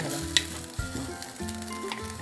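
A spoon stirring thick melted chocolate and cream in a glass bowl over a double boiler, scraping and clicking against the glass, with one sharper click about a third of a second in.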